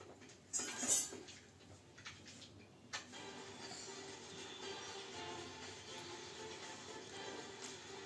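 Faint music from a television playing in the room, with a short noisy rustle about half a second in and a sharp click about three seconds in.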